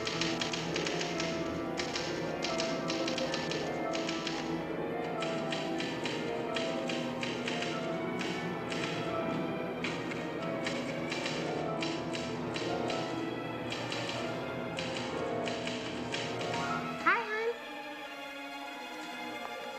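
Fast, irregular clacking of a manual typewriter's keys, typing almost without pause, over sustained tones of music. Near the end the typing stops with a brief, sharp louder sound.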